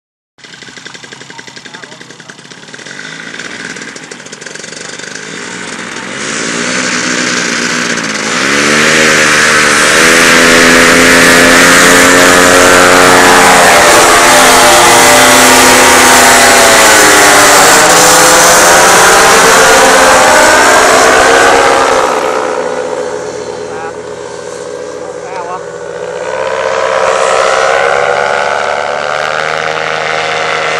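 Paramotor engine and propeller flying past low overhead, building to very loud around 10 seconds and holding there, its pitch dipping and rising as it passes. It fades somewhat a little after 20 seconds, then swells again near the end.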